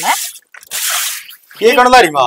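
A grass broom swept across wet concrete: one hissing swish lasting under a second, followed by a voice near the end.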